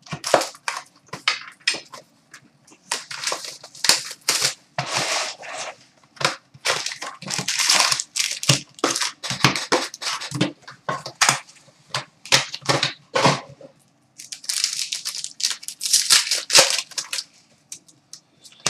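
A cardboard box of trading-card packs being torn open and the card-pack wrappers crinkled and ripped: a busy run of sharp crackles and tearing bursts.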